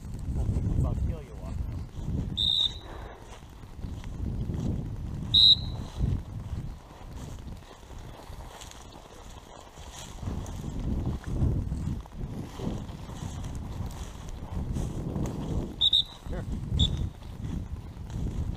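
Wind rumble and dry grass brushing against a camera moving quickly through a grass field, swelling and fading unevenly. Four short high chirps cut through it, two in the first few seconds and two near the end.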